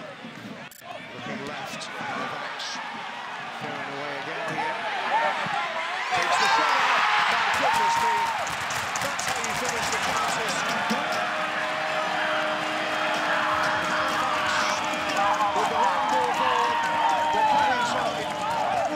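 Stadium crowd cheering a home goal, the noise rising sharply about six seconds in and staying loud, with many voices shouting over one another and a long held note through the second half.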